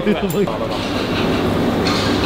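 A man's voice briefly, then the steady, loud, noisy din of a restaurant kitchen.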